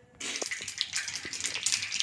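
Mustard seeds spluttering in hot oil in a small steel tempering (tadka) pan: a crackling sizzle with many small pops, starting suddenly just after the start.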